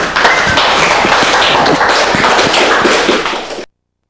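Audience applauding: a dense patter of many hands clapping that cuts off suddenly near the end.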